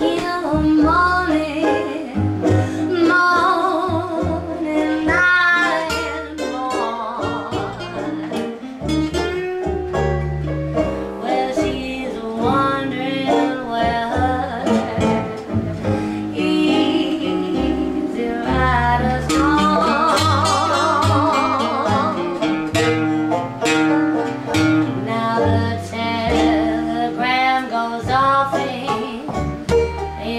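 A woman singing a blues song, her voice wavering in vibrato on held notes, over an acoustic string band of plucked upright bass, banjo and acoustic guitar.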